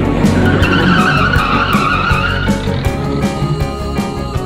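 A rally car driving hard on a gravel road, its engine and tyres on the loose surface swelling up and then fading over a couple of seconds. It is heard under a song with a steady beat.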